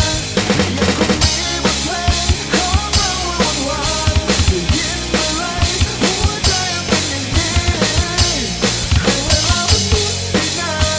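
Sampled drum kit from a phone drum app, tapped with the fingers on the touchscreen, playing a steady rock beat of kick, snare and cymbals along with a recorded Thai rock song with singing.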